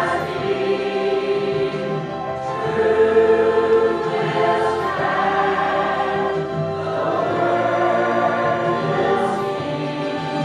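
Mixed church choir of men and women singing together, holding long notes.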